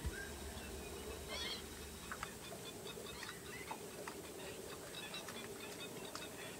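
Large flock of waterbirds at a stork gathering, giving scattered short squawks and chirps, with one louder call about a second and a half in. A brief thump right at the start, then a low rumble for about a second and a half.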